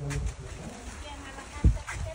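Footsteps on a dirt path with handheld-camera handling noise, and one heavier low thump near the end.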